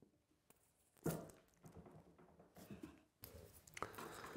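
A glued wooden tenon fitted into its mortise in a bench seat: a single wood-on-wood knock about a second in, followed by faint handling sounds of the parts.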